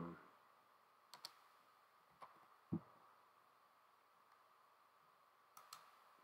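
Near silence with a few faint computer mouse clicks: two close together about a second in, one more around two seconds, a soft low bump shortly after, and a couple of clicks near the end.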